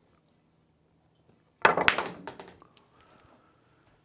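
A pool shot: the cue tip strikes the cue ball about one and a half seconds in, followed at once by a sharp ball-on-ball click from a stun shot, then a few softer clicks as the balls roll and settle.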